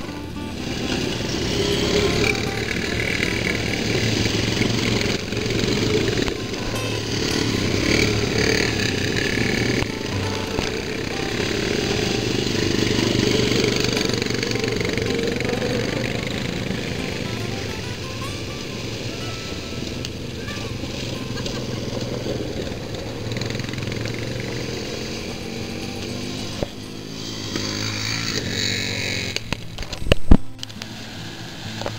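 Quad bike (ATV) engines running and revving as the bikes ride through mud and shallow water, with music playing throughout.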